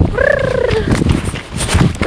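A woman's short drawn-out "ja" in the first second, slightly falling in pitch, said to the horse, over the horse's dull hoof thuds in snow.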